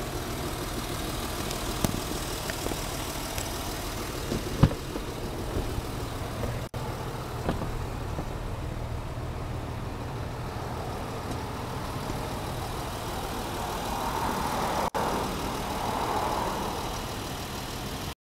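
Steady low engine hum of a vehicle at idle. A few handling clicks are scattered through it, with one sharp knock about four and a half seconds in, and a louder rushing noise swells near the end.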